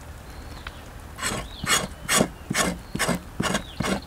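Knife blade scraping the surface of a grilled cow skin in quick repeated strokes, about two or three a second, starting about a second in.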